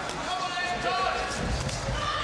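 Shouts from the crowd and ringside in a boxing hall, with a few dull thuds of gloved punches and boots on the ring canvas during an exchange.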